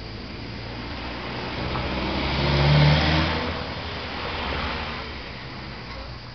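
A motor vehicle driving past, its engine and tyre noise growing louder to a peak about three seconds in, then fading away.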